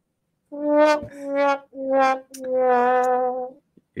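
Sad-trombone 'wah-wah-wah-waaah' sound effect: four brass notes stepping down in pitch, the last one held. It marks a wrong quiz answer.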